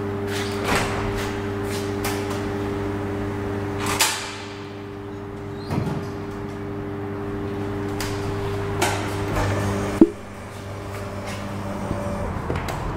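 Elevator sliding doors closing, with a clunk about four seconds in and smaller knocks after, over a steady machinery hum from the hydraulic elevator installation. About ten seconds in, a loud clunk, the loudest sound, comes as the hum cuts off.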